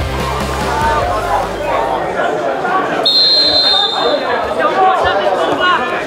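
Background music fades out in the first second or two, leaving footballers' voices calling out on the pitch. About three seconds in, a referee's whistle blows once for about a second.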